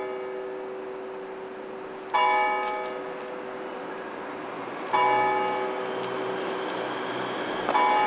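A church bell tolling: three strokes about three seconds apart, each one ringing on and slowly fading, over the lingering hum of the bell.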